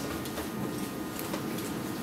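Steady faint room hiss with a few soft footsteps on a wooden stage floor.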